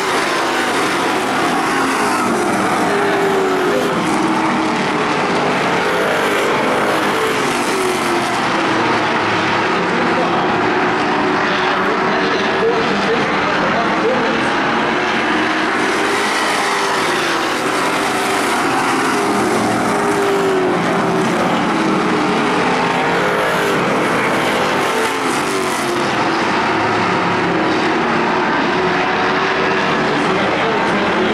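Several Super Street stock car engines racing together on a paved oval, loud and continuous, their pitch rising and falling again and again as the cars lift and accelerate through the turns and pass by.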